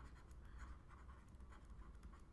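Faint, irregular scratching of a pen writing, over a low steady hum.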